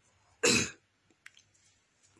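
A person gives one short cough, with a faint click about a second later.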